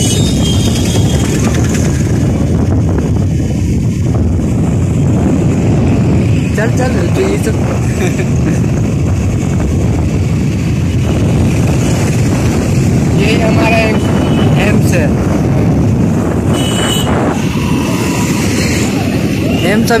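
Motorcycle running at road speed, its engine and the rushing air over the microphone making a steady, loud noise.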